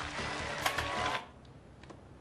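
A steady hiss with a few sharp clicks, growing quieter a little over a second in.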